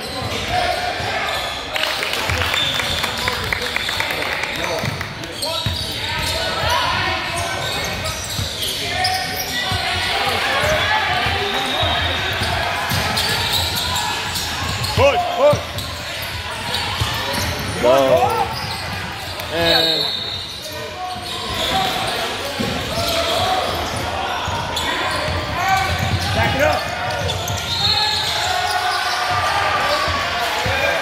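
Indoor youth basketball game in a reverberant gym: indistinct voices of players and spectators, a basketball bouncing on the hardwood floor, and a few short squeaks of sneakers on the court in the middle.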